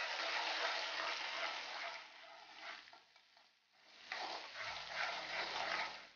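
Sliced onions and curry leaves sizzling in hot oil in a kadai while being stirred with a slotted spatula. The sizzle is loud and steady, drops away for a moment in the middle, then comes back strongly.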